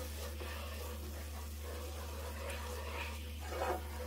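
Wooden spatula stirring a thickening flour-and-broth sauce in a nonstick skillet, with a faint sizzle from the pan, over a steady low hum.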